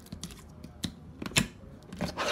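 Clear yellow slime being squeezed and pulled by hand in a plastic tub, giving a string of short sharp clicks and pops, the loudest about one and a half seconds in.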